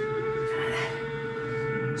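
Kawasaki ZX6R 636 inline-four engine held at high revs through a corner, a steady high-pitched whine that rises slightly, heard as onboard race footage played through a television's speakers in a room.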